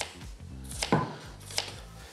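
Kitchen knife cutting through a halved onion onto a wooden cutting board: three separate cuts, each a sharp knock of the blade on the board, under a second apart.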